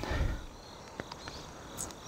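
Quiet outdoor background: insects buzzing faintly, with a low wind rumble on the microphone and a faint click about a second in.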